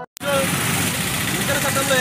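After a brief gap, outdoor street noise sets in: a steady hiss of passing traffic with people's voices talking under it.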